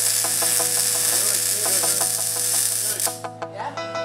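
Welding arc giving a steady high-pitched hiss that cuts off suddenly about three seconds in, over background music with plucked notes.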